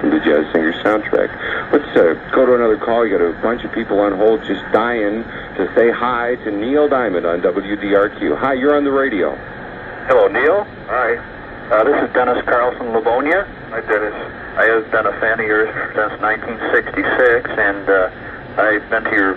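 Speech only: a person talking steadily over a narrow, band-limited radio recording, with short pauses.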